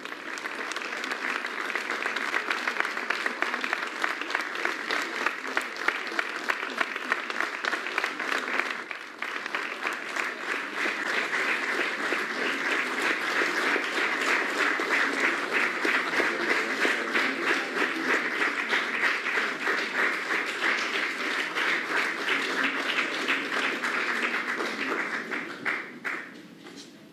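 Large audience applauding steadily, with a brief lull about nine seconds in; the clapping cuts off suddenly at the end.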